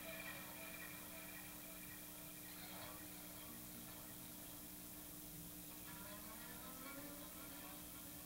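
Quiet electronic drone from a looping rig of guitar, synth and effects: a steady low hum with faint tones sliding up and down over it.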